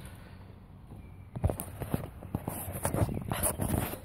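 Handling noise from a handheld phone as it is turned around: a quieter rumble at first, then from about a second and a half in a quick run of irregular knocks and rubs on the microphone.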